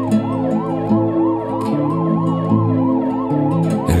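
Siren sound woven into a song's arrangement: a rapid up-and-down yelp about three times a second, with a slower wail rising and then falling over it, above sustained instrumental chords. Singing comes back in at the very end.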